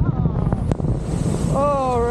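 Water-coaster boat hitting the splash pool and ploughing through the water: a heavy rush of spray with wind on the microphone, the hiss of spray coming in about half a second in. Near the end a rider's voice calls out over it.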